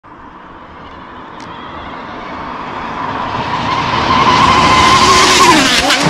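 Electric RC speed-run car approaching fast and passing close by: the high whine of its motor and drivetrain grows steadily louder, then drops in pitch as it goes past near the end.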